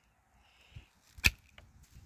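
Hand pruning shears snipping through a thin one-year pear shoot: one sharp snap a little over a second in, with a few small clicks of the blades and twigs around it.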